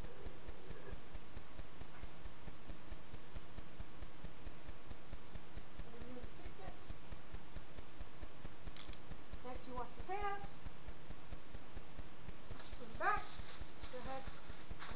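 Steady low rumbling background noise with a faint crackle, under a few short, faint spoken words about halfway through and near the end.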